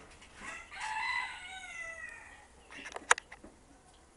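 A rooster crowing once: one long call that falls slightly in pitch toward its end. About three seconds in comes a single sharp click.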